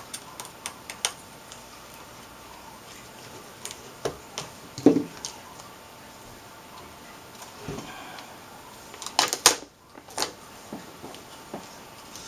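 Irregular light clicks and taps of hands and a small screwdriver working on the sheet-metal back frame of an LCD panel, with one sharper knock about five seconds in and a quick run of clicks about three-quarters of the way through.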